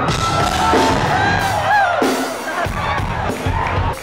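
Concert audience cheering and whooping over live music from the stage, with sliding, wavering pitched notes.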